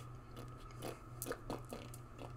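A few faint, short clicks and soft rustles scattered over a low steady hum.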